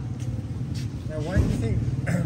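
Steady low hum of street background, like a running engine, with a brief stretch of soft talking about a second in.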